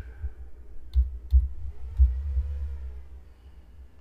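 Computer keyboard and mouse clicks: about four sharp clicks, each with a dull low thud, spaced roughly half a second to a second apart in the first two seconds, then quiet.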